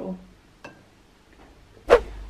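A brief hummed voice sound at the start, then a quiet room with a faint click, and a single sharp knock near the end.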